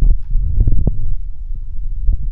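Paper crinkling in a few short crackles about half a second to a second in as the paper gift bag is handled. A loud low rumble, typical of handling noise on a phone's microphone, runs underneath.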